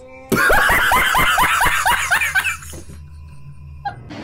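A man laughing hard in rapid falling bursts, about five or six a second, for roughly two seconds. The laughter stops and leaves a faint steady hum.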